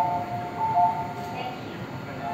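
A two-note electronic chime on a railway station platform: a high note and then a lower one, overlapping, sounding twice over a low background murmur.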